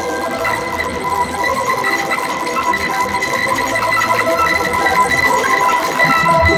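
Electronic ambient drone music: several sustained tones held over a noisy, hissing bed.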